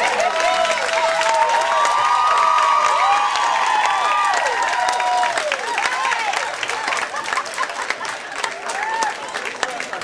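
Audience applauding and cheering after a song, with many whooping voices over the clapping in the first half. The whoops die down and the clapping carries on, slightly quieter, mixed with crowd chatter.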